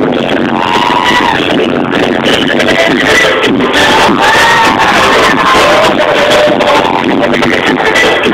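Live pop concert music, loud and steady: the band playing with a sung lead vocal line, recorded from among the audience.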